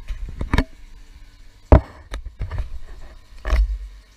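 Camera handling noise: a series of knocks and bangs as the camera is picked up, carried and set down, the loudest bang about two seconds in and another cluster near the end.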